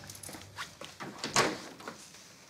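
A room door being opened: a handful of short clicks and knocks from the handle and latch, the loudest a little after a second in.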